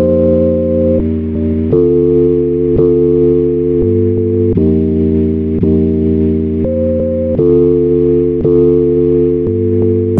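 Instrumental hip-hop beat in a stretch without drums: sustained chords over a steady bass line, the chord changing every second or two.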